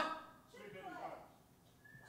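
Speech only: a man's voice over the stage microphones trailing off, a little faint talk, then a short lull.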